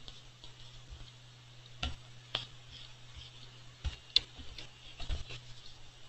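About half a dozen scattered clicks from a computer mouse and keyboard, over a low steady hum.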